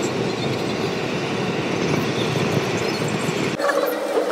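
Steady road noise heard from inside a moving car, a continuous rumble with no distinct events. It cuts off abruptly near the end, giving way to a different room background.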